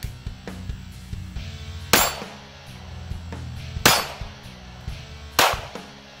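Three sharp .22 rimfire shots from a Smith & Wesson 317 kit-gun revolver, roughly two seconds apart, each with a short ring after it. Background music plays underneath.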